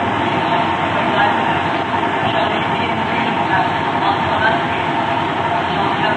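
Loud, steady rumbling noise with indistinct voices faintly under it, from an old tape recording of a church service.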